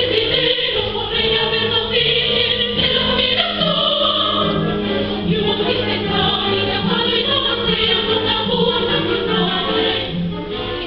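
A choir of young female voices singing together over steady, sustained low notes.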